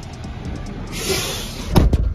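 Semi-truck cab door swung shut, landing with one heavy slam near the end. It comes after a short burst of hissing noise, while sleet ticks steadily throughout.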